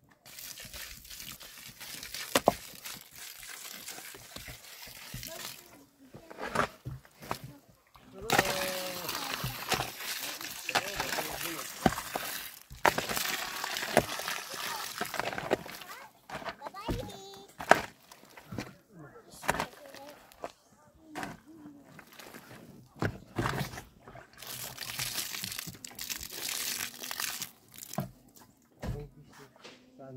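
Water poured in several long goes from a plastic jerrycan, splashing onto stones and dirt, with a shovel scraping and knocking against stones as the wet soil is worked into mud.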